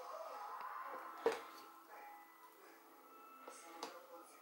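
Plastic clicks and knocks from a hand-blender chopper bowl being handled as its blade insert is lifted out and a spatula goes in: one sharp click about a second in and a softer one near the end.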